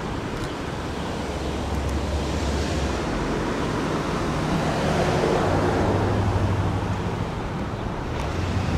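A wind-like rushing noise with a low engine hum, typical of road traffic. It grows louder a few seconds in and eases near the end, as a vehicle passes.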